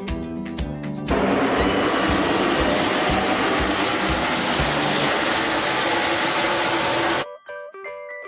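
Background music with a steady beat; about a second in, the loud roar of a pack of NASCAR stock cars' V8 engines passing at speed comes in over it, lasts about six seconds, then cuts off suddenly near the end, leaving the music's chime-like notes.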